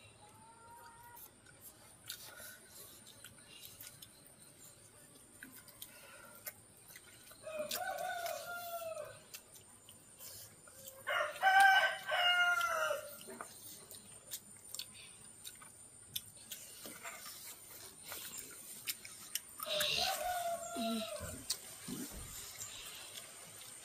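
A rooster crowing three times: once about a third of the way in, loudest in the middle, and again near the end.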